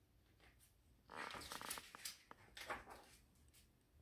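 Pages of a hardcover picture book being turned and handled: a faint rustle of paper with a few small clicks, starting about a second in and lasting about two seconds.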